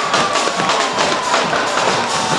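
Guggenmusik carnival band playing live and loud: brass over a steady beat of drums, with one long high note held across the whole stretch and sinking slightly in pitch.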